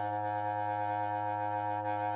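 Bass clarinet holding a single steady low note.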